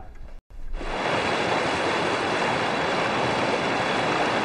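Heavy rain pouring, a steady dense hiss that starts just under a second in and holds at an even level.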